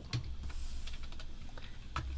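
A few light, scattered key clicks on a computer keyboard as a spreadsheet formula is entered.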